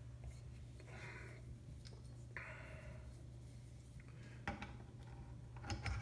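Faint handling of the aluminium gimbal head and its quick-release clamp: two short soft rubbing or sliding sounds, then a few light clicks near the end, over a steady low hum.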